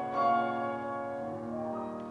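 Grand piano playing: a chord is struck just after the start and left to ring, more notes come in about a second and a half in, and the sound fades away.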